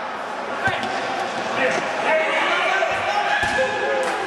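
Futsal ball being kicked and bouncing on the indoor court, three dull thuds, over continuous shouting and chatter from players and spectators in a reverberant sports hall.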